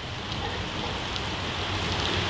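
Steady room noise: an even hiss with a low hum underneath.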